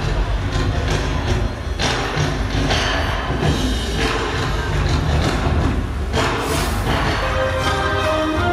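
Show soundtrack played loud over outdoor loudspeakers in a percussive passage: deep drum thumps under a dense wash of sound, with rushing swells about two, three and six and a half seconds in. Held musical notes come back right at the end.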